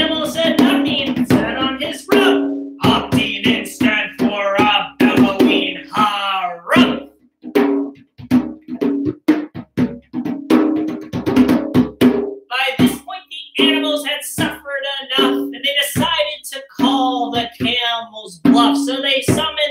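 Djembe played with bare hands in a steady rhythm of sharp slaps and tones, under a man's wordless sung melody.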